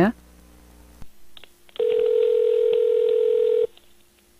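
Telephone ringback tone heard down the line of an outgoing call: a click about a second in, then one steady ring of about two seconds that stops abruptly, with the thin, narrow sound of a phone line.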